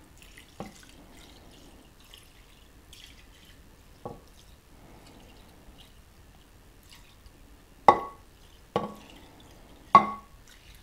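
Beef broth poured slowly from a glass measuring cup into a glass baking dish of rice: a faint trickle with a few sharp, ringing plinks that grow louder toward the end.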